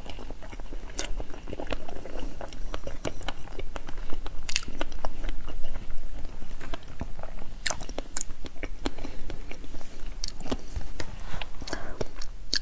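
A person chewing raw salmon close to a lapel microphone: soft chewing with many short mouth clicks at irregular intervals.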